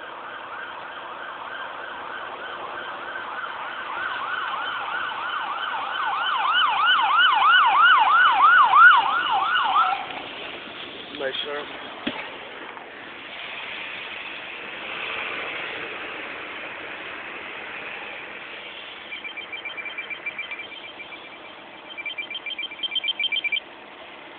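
Emergency vehicle siren sounding, a slow wail that switches to a fast yelp about six seconds in and cuts off suddenly about ten seconds in. Near the end comes a rapid high beeping in short runs.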